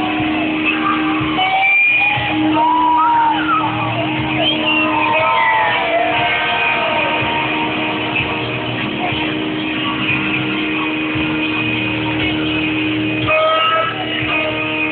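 Live rock band playing at a concert, with long held notes and sliding, bending notes a few seconds in, recorded from the audience on a low-quality device.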